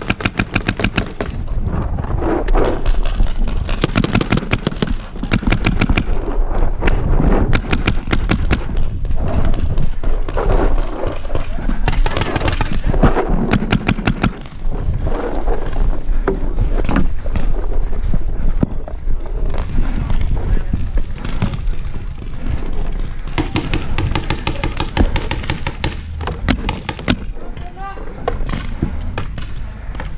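Paintball markers firing in rapid strings of sharp pops, mixed with shouting voices.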